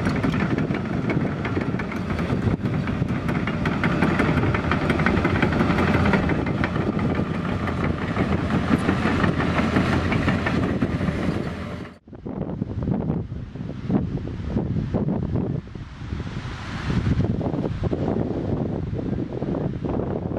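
Doosan DX340LC tracked excavator driving up close, its diesel engine running with the steel tracks rattling steadily. About twelve seconds in the sound cuts off abruptly and gives way to a quieter, uneven sound with the machine further off.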